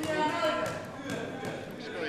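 Faint speech: voices talking off-microphone in a large, echoing parliamentary chamber.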